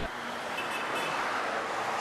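Steady outdoor hiss of distant road traffic, with no distinct events.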